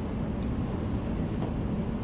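Lecture-hall room tone: a steady low rumble with no speech and no distinct events.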